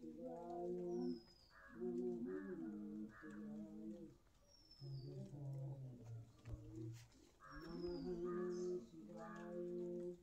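A person humming a tune in drawn-out phrases, while a small bird gives a short, high, falling whistle three times.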